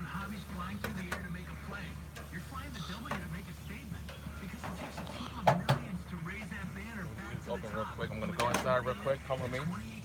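Talk running on in the background with two sharp metallic clicks about five and a half seconds in: metal grill tongs striking the grill grate while food is turned.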